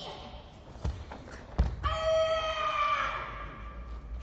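A karateka's kata: a soft thud, then a sharp heavy thud (a stamp or strike on the mat), followed at once by a long high-pitched kiai shout held for about a second and a half, sinking slightly in pitch, in a reverberant hall.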